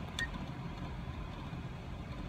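Car engine idling, a steady low rumble heard from inside the cabin, with a short high click about a quarter second in.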